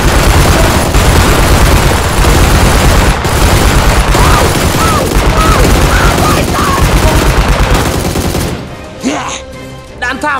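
Loud, continuous rapid gunfire sound effects, like several machine guns firing at once, dubbed over toy-blaster fire; it cuts off about eight and a half seconds in.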